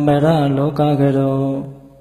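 A man's voice chanting a Buddhist chant in long held tones that waver slowly in pitch. The phrase breaks off about three-quarters of the way through.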